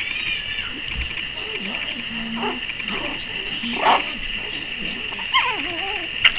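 Four-week-old Zu-Chon (Shih Tzu × Bichon Frise) puppies play-fighting, giving short high yips and whines here and there, with one louder cry about four seconds in and wavering squeals near the end.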